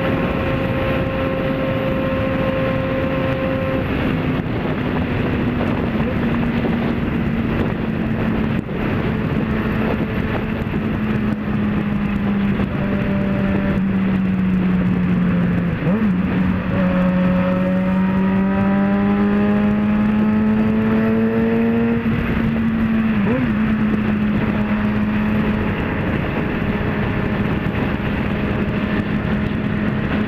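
Motorcycle engine running at steady highway cruising speed, with heavy wind and road noise. About halfway through, the engine note dips briefly, then rises gradually for several seconds as the bike picks up speed.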